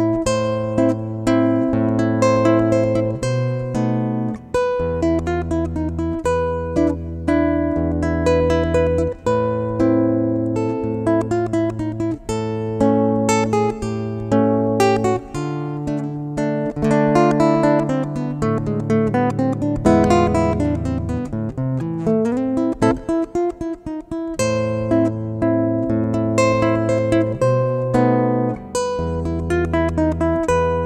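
Yamaha SLG200NW silent nylon-string guitar played fingerstyle: a traditional Venezuelan waltz, with held bass notes under a quicker plucked melody.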